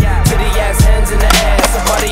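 Skateboard wheels rolling on a concrete skatepark surface, heard under hip-hop music with a steady drum beat.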